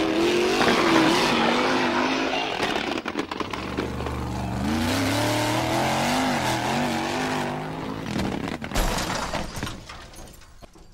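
Electric motor and gear drive of a radio-controlled toy jeep whining, its pitch rising and falling with the throttle as it climbs loose gravel, with a single thump about nine seconds in.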